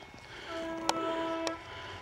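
Train horn sounding once, a single steady note about a second long, from a train approaching Ribblehead Viaduct on the Settle–Carlisle line.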